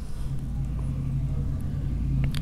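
A steady low hum or rumble in the background, holding one low tone without change.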